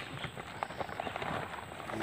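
A woven plastic sack being handled over plastic crates: quiet rustling with a run of irregular light clicks and knocks.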